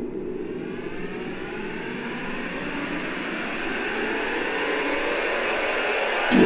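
Synth-pop track intro: layered synthesizer sweep rising slowly in pitch over a low rushing noise, swelling gradually as it builds toward the first beat.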